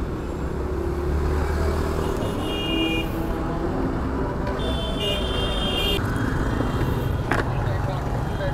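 Street traffic noise with a steady low engine rumble. A high-pitched vehicle horn sounds twice, briefly about two and a half seconds in and again for about a second around five seconds in.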